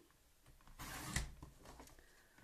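A sheet of cardstock sliding and rustling across the base of a paper trimmer as it is moved into position, a soft scraping noise lasting about a second.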